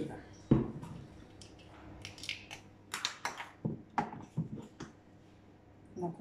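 Light clicks and taps of a plastic oil dispenser bottle and a measuring spoon being handled on a kitchen counter, with one sharper knock about half a second in.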